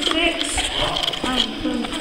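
Indistinct talking from people in the group, with a couple of short knocks.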